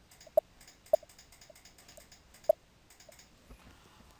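Computer mouse clicking: a few separate sharp clicks, three louder ones in the first two and a half seconds with fainter ones between, over quiet room tone.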